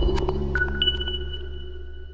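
Electronic music sting of a TV channel's logo ident: a deep held bass note under high pinging tones, two more pings sounding about half a second in, the whole slowly fading away.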